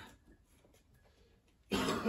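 Quiet room tone with a faint click at the start. Near the end, a short loud burst from a man's voice, breathy and cough-like, leads into speech.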